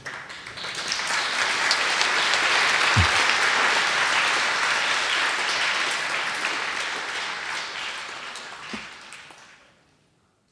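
Audience applauding in a large hall: the clapping builds over the first second, holds steady, then slowly dies away and fades out near the end.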